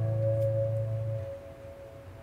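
The final guitar chord of a song ringing out and dying away. The low notes stop about a second in, while one high note lingers faintly.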